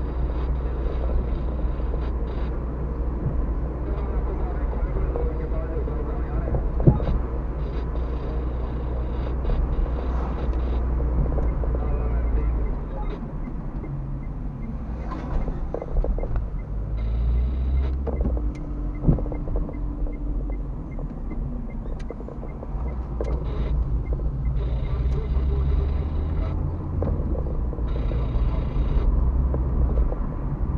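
Car cabin noise while driving slowly through town: a steady low engine and tyre rumble that eases and builds with speed, with a few short knocks from the road. A faint regular ticking runs for several seconds in the middle.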